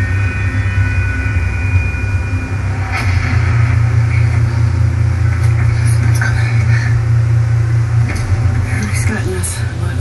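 Film trailer soundtrack played through a TV's speakers and picked up by a phone: a steady low rumbling drone that thickens about three seconds in, under dialogue and scattered brief sound effects.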